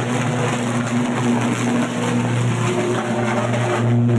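Electrical arc travelling along overhead power lines, a roaring, steady buzz: a strong low mains hum with a dense hiss over it. Online commenters take it for a high-impedance arcing fault.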